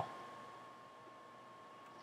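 Quiet room tone with a faint steady high tone, after the last word fades out at the start.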